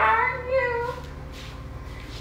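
A high-pitched vocal call that slides in pitch, lasting about a second, then stops.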